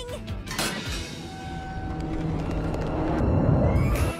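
Cartoon sound effect of a flying van's rocket boosters: a rumbling rush that swells louder toward the end, under background music.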